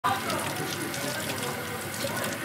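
Kitchen tap running into a sink as dishes are washed, a steady hiss of water, with faint voices under it.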